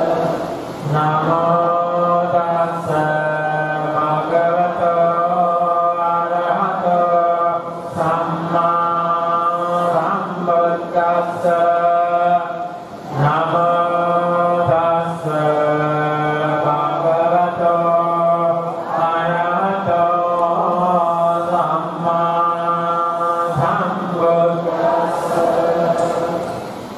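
Buddhist monks chanting: a steady, melodic recitation in long held phrases, broken by brief pauses for breath every several seconds.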